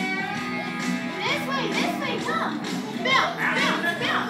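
Recorded music playing with young children's high voices chattering and calling out over it, busier after about a second.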